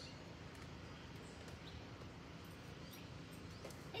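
Quiet outdoor background with a few faint, brief high chirps from distant birds.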